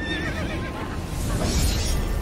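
Horror sound-effect montage with music: a high wavering cry at the start over a deep rumble, and a hissing swell near the end.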